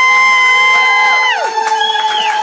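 Several voices giving a long drawn-out cheer. The loudest slides up to a high held note that drops away about a second and a half in, others hold lower notes beneath, and another voice takes up a fresh call near the end.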